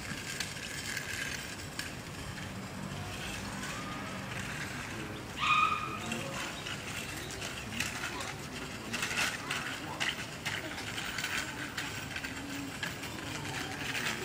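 A child's small bicycle with training wheels rolling over paving, with light rattling and clicking, and voices in the background. A short high-pitched call stands out about five and a half seconds in.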